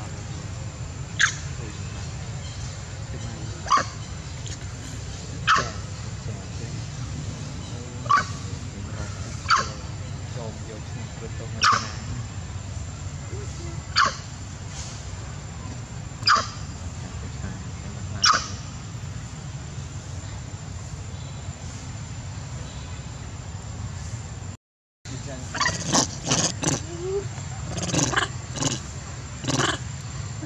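A steady low rumble under short, sharp, high chirps repeating about every two seconds. After a brief dropout near the end, a quicker flurry of short calls from long-tailed macaques.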